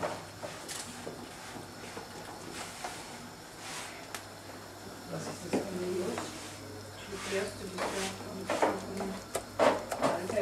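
Quiet kitchen handling: a few light knocks and scrapes of a wooden spoon working cooked apples in a steel bowl, over a steady low hum. Low voices come in during the second half.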